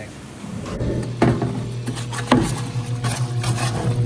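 Parts-washer solvent tank pump humming steadily after it starts about a second in, with solvent running over an oil pan and two sharp metal clunks as the pan is handled in the tank.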